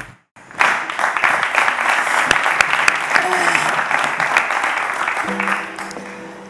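A studio audience applauding, starting just after the music cuts out and thinning a little toward the end; a steady held tone comes in near the end.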